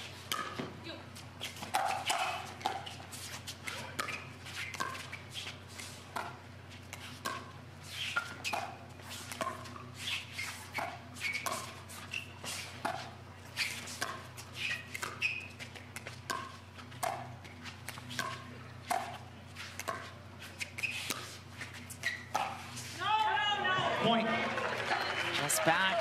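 A long pickleball rally: paddles striking the hard plastic ball, each hit a short sharp pop with a brief ringing, about one a second. Near the end the point finishes and the crowd cheers loudly.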